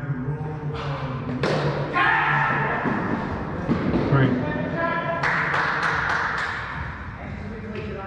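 Indoor cricket ball struck by a bat with a sharp crack about a second and a half in, followed by players shouting. A quick run of five or six sharp knocks comes past the middle.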